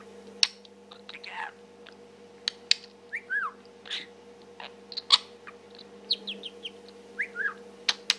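A budgerigar chattering to itself: quick clicks and short chirps, with a couple of brief falling whistles, one about three seconds in and one near the end.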